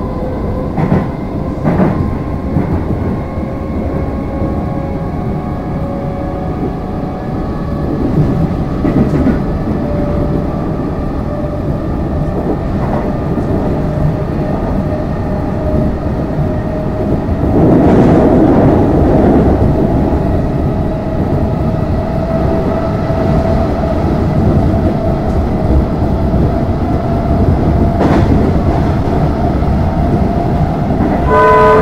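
Alstom Comeng electric train heard from inside a carriage while running at speed: a steady rumble of wheels on the track and a whine that slowly rises in pitch, with a few clacks over rail joints. About two-thirds of the way through, a louder rush of noise lasts about two seconds.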